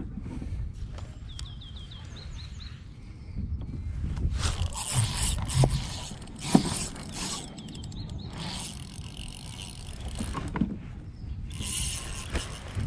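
Spinning reel being cranked in spells as a lure is reeled in, its gears and line giving a scratchy mechanical sound, with a single sharp knock about six and a half seconds in.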